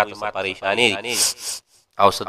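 A man's voice speaking into a microphone, then a short hiss about a second in, and the sound cuts off suddenly to near silence just before the end.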